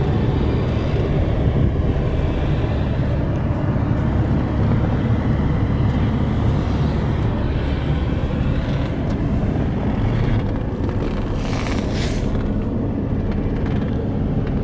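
A 2003 Porsche 911 Carrera's rear-mounted 3.6-litre flat-six running steadily, heard from inside the cabin.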